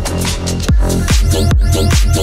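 Vixa-style electronic dance music: a hard kick drum over heavy bass with fast repeating synth stabs. The beat drops back in under a second in and then runs at about two and a half kicks a second.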